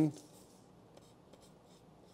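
Pencil writing on a paper lab sheet on a clipboard: faint, short scratches of the lead as the strokes of a letter and lines are drawn.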